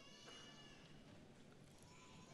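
Near silence: faint hall room tone, with a faint high-pitched call in the first second.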